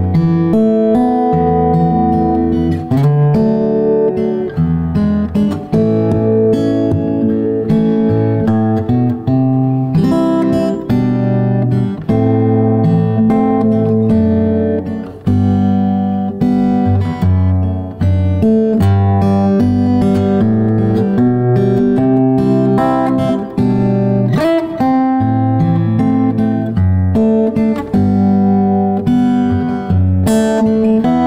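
Solo acoustic guitar played fingerstyle: a slow melody picked over sustained bass notes and chords.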